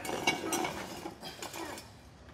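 Light metallic clicks and clinks as a steel axle stand is adjusted by hand, its ratchet column, locking pin and chain knocking against the frame.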